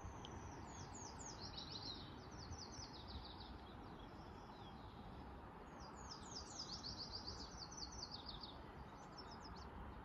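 A songbird singing two runs of quick, high, falling notes, the second starting about six seconds in, over a faint steady background hiss.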